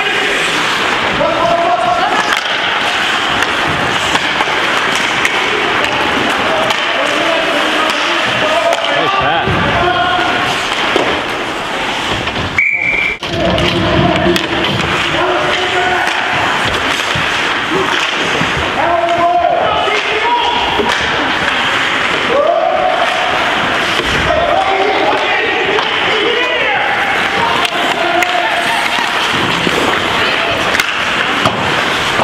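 Indoor ice hockey game: skate blades scraping on the ice, sticks and puck clacking and bodies thudding against the boards, under a steady din of shouting voices.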